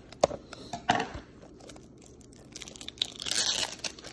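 Cellophane shrink-wrap being torn and peeled off a plastic UMD movie case: a few sharp crackles in the first second, then a longer stretch of crinkling near the end.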